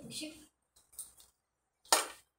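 A brief voice at the start, a faint click about a second in, then a single sharp clink of a hard object near the end.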